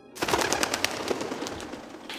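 A sudden flurry of pigeon wing claps as birds take off, a rapid irregular clatter that thins out over about a second and a half.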